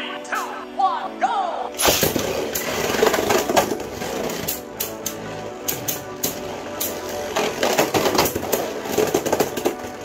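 Two Beyblade spinning tops launched into a plastic stadium about two seconds in, then whirring and colliding with rapid clicks and clacks that come thickest near the end, over background music.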